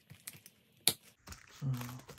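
Plastic envelope sleeves in a ring binder being handled and smoothed flat: soft rustles and light taps, with one sharp click about a second in. A brief hum of a voice near the end.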